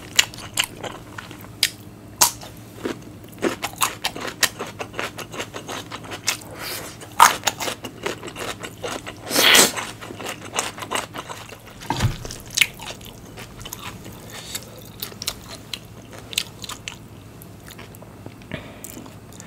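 Close-miked chewing of a mouthful of spicy fire noodles with corn cheese and grilled Thai fermented pork sausage. It is a string of small wet clicks and smacks, with a longer, noisier swell about nine and a half seconds in and a low thump about twelve seconds in.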